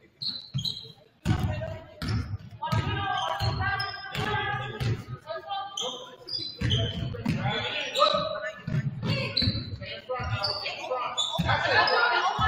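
A basketball dribbled on a hardwood gym floor in repeated bounces, with voices shouting in the gymnasium.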